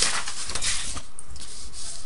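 Dry rubbing and scraping noise with no pitch, strong through about the first second, weaker after, and coming back briefly near the end.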